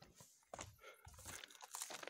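Near silence, with faint irregular rustling and a few small clicks.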